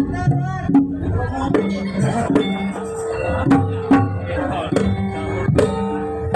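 Javanese gamelan accompaniment: a kendang hand drum playing irregular strokes, with short ringing notes from struck bronze keys.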